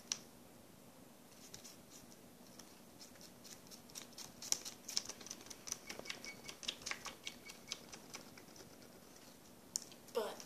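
Slime being squished and poked by fingers against a wooden tabletop: small sticky clicks and crackles in irregular flurries, busiest in the middle, with one sharper click near the end.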